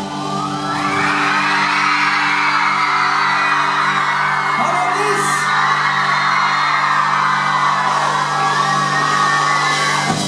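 A live band holding a sustained chord while the audience cheers and whoops, the crowd noise swelling about a second in.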